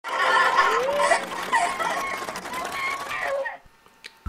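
Laughter mixed with high-pitched voices. It stops shortly before the end.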